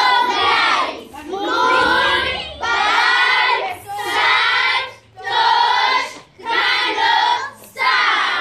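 A group of children singing together in unison, in short phrases of about a second each with brief breaks between them.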